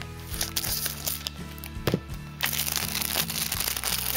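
Plastic shrink-wrap crinkling and crackling as it is cut and pulled off a DVD case, over steady background music.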